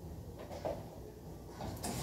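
Faint knocks and clinks of kitchenware being handled at a stove, over a low steady background hum.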